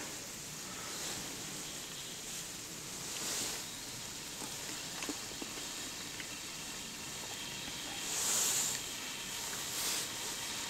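Faint steady hiss from a small Esbit fuel-tablet stove burning under a pan of leftover bacon grease, swelling twice and with a few light ticks near the middle.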